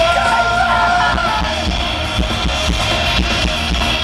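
Live punk rock band playing fast and loud, with distorted guitar, bass and pounding drums, heard from the crowd. A yelled vocal line is held for about the first second and a half.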